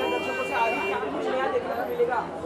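Background chatter of several people talking over one another. A steady tone is held through about the first second.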